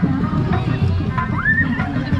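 Music from a West Javanese kuda lumping procession band: a steady drum beat with held pitched notes. About one and a half seconds in, a short note slides upward and holds.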